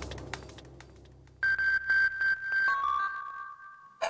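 Television news opening jingle: the busy percussive music tails off, then a high synthesizer tone comes in about a second and a half in, pulsing in quick repeated beeps, before stepping down to a lower held note that fades out.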